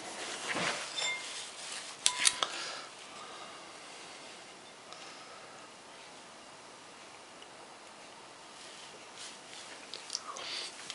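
Plastic spoon scraping and clinking against a ceramic bowl of porridge, with a sharp ringing clink about two seconds in; after that only faint room tone.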